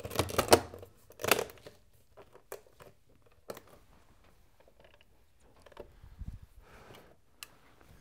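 Handling noise from the cover panel of a Bose Lifestyle 20 stereo being pressed and fitted by hand: a few sharp clicks and knocks in the first second and a half, then scattered faint taps.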